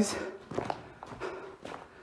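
Footsteps over the rocky floor of a lava-tube cave: a few irregular steps, just after a man's voice trails off.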